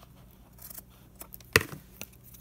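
Scissors snipping through lace trim along the edge of a cardboard box: a few soft snips, then one louder, sharp snip about one and a half seconds in.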